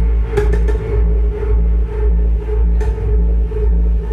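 Live band playing loud dark electronic music: a deep, sustained bass drone under a pulsing beat, with sharp percussion hits.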